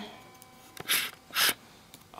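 Two short breaths, about half a second apart, during a pause in speech.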